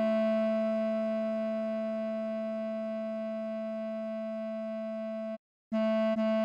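A bass clarinet holds one long B over a sustained piano D major chord. The piano chord stops about four seconds in while the clarinet note carries on. The note breaks off briefly near the end and the same B sounds again.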